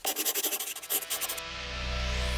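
Outro sound effect: a fast, rhythmic scratching whoosh with the wipe transition for about the first second and a half, then music entering with a low, steady bass drone.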